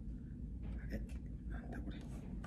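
A man's faint whispered voice over a low steady hum.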